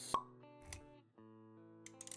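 Intro music of held notes, with a sharp pop sound effect at the start and a soft low thud a little before halfway through.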